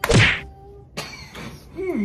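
A flour tortilla slapped hard against a man's face: one sharp, loud smack right at the start. Near the end a person's closed-mouth "mm" vocal begins.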